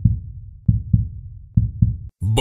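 Heartbeat-style sound effect: deep double thumps, three lub-dub pairs a little under a second apart, each thump fading quickly.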